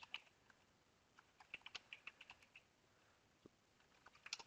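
Faint computer keyboard typing: a quick run of about a dozen keystrokes in the middle, with a few single key clicks before and after.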